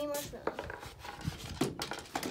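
A voice trailing off at the start, then a few light clicks and taps scattered through the rest.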